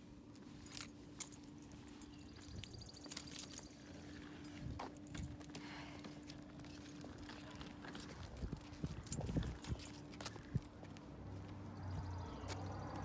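Faint footsteps in slide sandals and a pushed stroller's wheels on pavement: scattered small clicks and rattles with a few soft thumps, over a faint steady hum that stops near the end.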